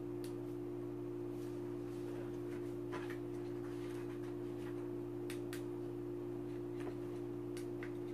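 A steady low hum made of two constant tones, with a few faint clicks from a small plastic toy remote control being handled.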